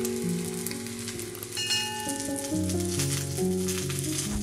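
A meat dish topped with grated cheese and tomato slices sizzling in a frying pan, with a steady hiss and light crackling, heard over background music.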